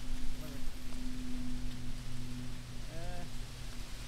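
Gusty wind noise on the microphone over a steady low hum.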